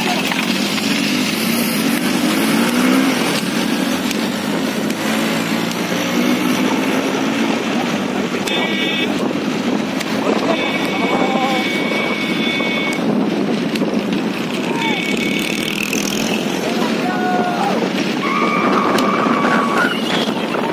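Motorcycle engine running with wind rush as the bike rides along a dirt track close behind galloping racing horse carts, with men shouting. A high steady horn-like tone sounds three times, the longest for about two seconds.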